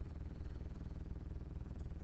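A faint, steady low hum of background noise, with no distinct events.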